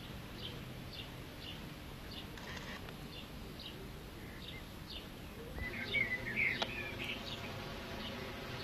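Birds chirping: a short high call repeated about twice a second throughout, with a louder burst of song about six seconds in.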